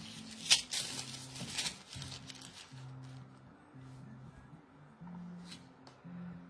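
Soft background music with slow low notes, and a few light clinks and rustles, mostly in the first two seconds, from silver chains being handled and set aside.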